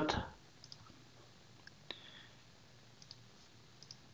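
About four faint, widely spaced clicks from a computer's mouse and keys, the sharpest about two seconds in, over low room tone.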